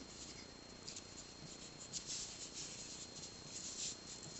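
Faint rustling and light scratching of fingers handling thin metal wire and 1 cm pearl beads as the strung wire is drawn tight, with a few soft ticks.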